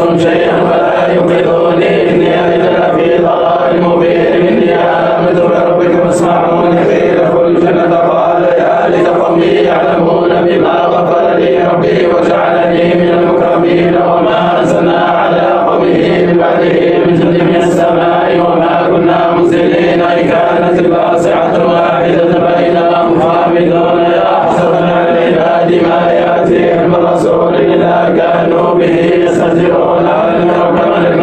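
Men's voices chanting together in a Sufi samāʿ (devotional chant), a steady sustained chant with no pause.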